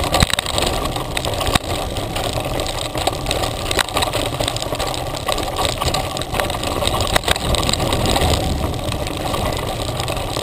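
Mountain bike riding fast down a dirt trail: steady knobby-tyre rumble on dirt, broken by sharp knocks and rattles from the bike going over bumps.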